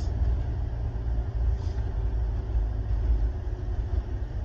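Cabin sound of a 1990 Nissan Pulsar GTi-R's turbocharged 2.0-litre four-cylinder pulling under load in a second-gear roll-on, heard as a steady low engine and road rumble.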